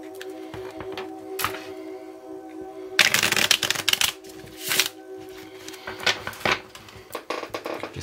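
A deck of tarot cards being shuffled by hand, with a dense burst of riffling cards about three seconds in lasting about a second, a shorter burst just after and scattered card clicks. Soft background music with steady held tones plays underneath.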